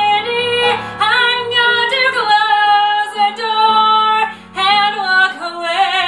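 A mezzo-soprano voice singing a musical-theatre ballad over instrumental accompaniment, with long held notes and vibrato, and a short breath pause about four and a half seconds in.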